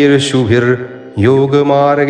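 A man chanting a Sanskrit shloka in a sustained, melodic recitation, two phrases with a short breath about a second in, over soft background instrumental music.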